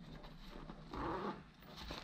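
Faint rustling of a backpack's nylon and mesh fabric being handled as a pocket is pulled open, with one short, slightly louder swish about a second in.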